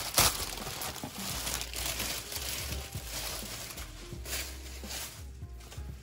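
Packaging crinkling and rustling as it is pulled open, with a sharp crackle just after the start.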